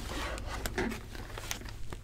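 Fabric rubbing and rustling as a hooped cotton tea towel is unclipped and slid off an embroidery machine's arm, with a few light clicks.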